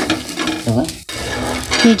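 Egg batter and bread frying on a hot tawa, sizzling, with a metal spatula scraping and knocking on the griddle. The sound cuts out briefly about a second in.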